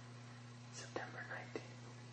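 A person whispering a few words, about a second in, over a steady low electrical hum.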